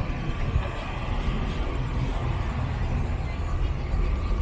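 City street ambience: a steady low rumble of traffic with a faint wash of background noise above it.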